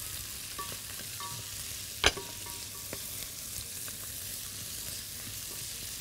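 Onion, garlic, green pepper, cashews and raisins sizzling steadily in butter in a heavy pot as fresh mint is tipped in and stirred with a wooden spatula. One sharp knock about two seconds in, with a few faint ticks.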